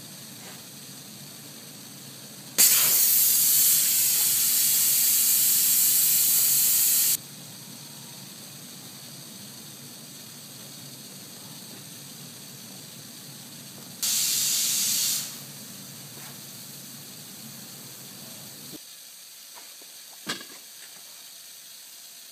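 Compressed air hissing through an air-bearing spindle rig: a steady low air sound with two loud bursts of hiss, one of about four and a half seconds a few seconds in and a shorter one of about a second past the middle. The steady air sound cuts off suddenly near the end, followed by a single click.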